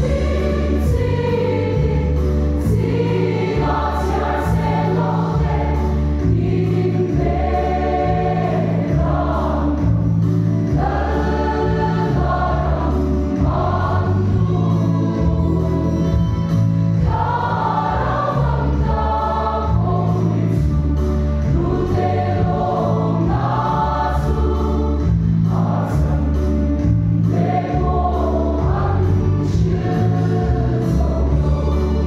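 Large mixed church choir singing a hymn in Mizo, with a low bass line moving in steps beneath the voices.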